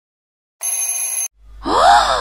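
A brief alarm-clock ring, a steady high tone lasting under a second. It is followed by a startled vocal exclamation that rises and then falls in pitch.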